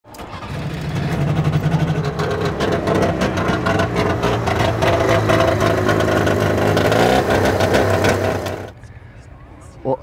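1987 Trabant 601 S's small air-cooled two-stroke twin running and revving, a rapid buzzing pulse whose pitch rises and falls; it cuts off suddenly near the end.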